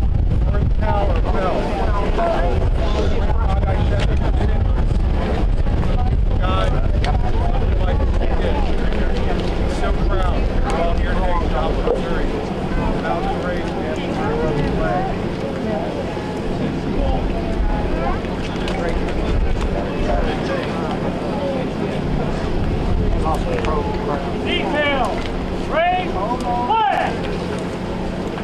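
Wind buffeting an outdoor microphone, a heavy low rumble that eases somewhat about halfway through, with indistinct voices murmuring in the crowd.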